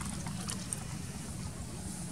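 Steady low rumble of wind on the microphone, with a few faint clicks.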